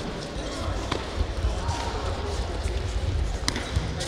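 Taekwondo sparring: feet thudding and stamping on the foam mat and kicks smacking into padded electronic body protectors. Two sharp smacks stand out, one about a second in and the loudest about three and a half seconds in.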